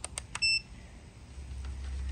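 Digital multimeter being set to continuity: a few sharp clicks from its rotary dial, then one short high beep about half a second in. A low rumble follows near the end.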